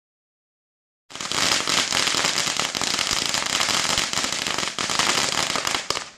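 A string of firecrackers going off in a rapid, dense crackle that starts suddenly about a second in and keeps on without a break.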